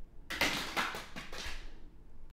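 Clear plastic packaging crinkling and crackling as it is handled: a cluster of short, sharp crackles starting about a third of a second in, thinning out towards the end.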